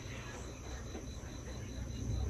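Quiet room tone: a steady low hum and soft hiss with a faint, thin high whine.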